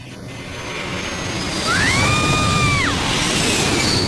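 Jet engine sound effect of a jet flying past: a rushing jet noise swells over the first two seconds. A high whine rises, holds and drops away around the middle as the noise begins to ease.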